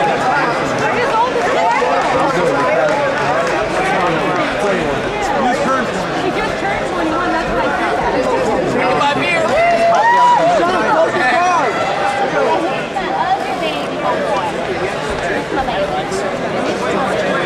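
Many overlapping voices of a tournament crowd: steady, indistinct chatter, with a louder voice calling out about ten seconds in.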